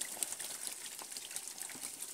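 Small catfish splashing and stirring at the surface of a shallow tarpaulin pond: a faint, even patter of many little water splashes and drips.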